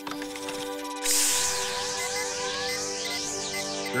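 Sustained music notes under a cartoon sound effect of the snow machine starting up: about a second in, a loud hissing swirl of wind begins, with whistling tones swooping up and down as it spins inside its dome.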